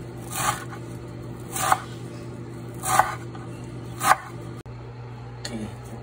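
Chef's knife chopping fresh dill and herbs on a bamboo cutting board: four strokes about a second and a quarter apart, each a short swish through the leaves ending in a sharp knock on the board. A steady low hum runs underneath, with softer handling sounds near the end.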